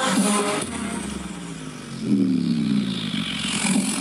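Electronic music with deep bass playing through a BlitzWolf BW-WA1 portable speaker. About two seconds in, a low, growling synth tone sweeps downward in pitch.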